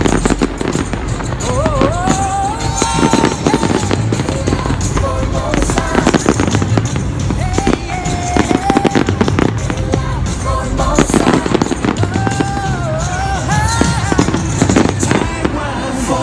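Fireworks show with aerial fireworks going off in a dense, continuous run of bangs and crackles, mixed with loud music carrying a melody.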